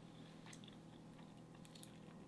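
Faint chewing and small mouth clicks from a person eating, over near silence.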